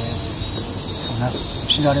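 A steady, high-pitched insect chorus that keeps on without a break, with a man's voice coming in faintly in the second half.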